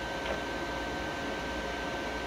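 Steady fan hiss with a thin, steady high whine from a powered-on inverter welder, most likely its cooling fan and electronics running at idle.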